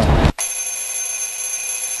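Alarm clock sound effect ringing: a steady, high-pitched ring that starts abruptly about a third of a second in and holds without a break.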